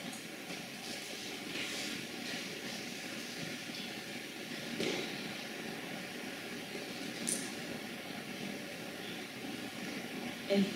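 Steady low hiss of room noise with a faint hum, broken by a small tick about five seconds in and a short, sharp click a couple of seconds later.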